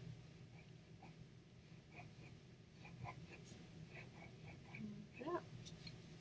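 Faint scratching of a white pencil on paper as stripes are drawn and coloured in, over a low hum. A brief, faint voice-like sound rises about five seconds in.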